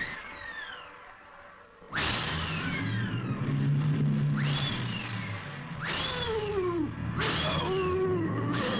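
Cartoon storm effects: gusts of hissing wind that break in suddenly three times, each with high whistling tones that slide downward. They play over low sustained orchestral notes.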